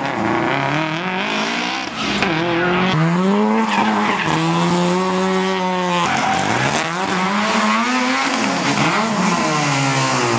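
Race car engines revving hard, pitch rising and falling repeatedly with throttle and gear changes, with tyre squeal as the cars slide through corners. About six seconds in, a second car's engine abruptly takes over.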